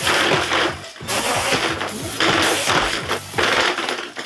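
A tower of stacked LEGO spring-loaded shooters firing, plastic missiles and parts clattering in about four bursts roughly a second apart, over background music. Only part of the tower fires: the weight does not get halfway down.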